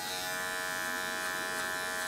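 Electric hair clippers running with a steady, even buzz as they are brought to the side of the head to trim the hair.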